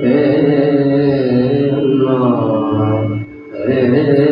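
A man singing long held notes into a microphone in Hindustani classical style, the pitch sliding between notes about two seconds in, with a short pause for breath a little after three seconds. A faint steady drone continues beneath.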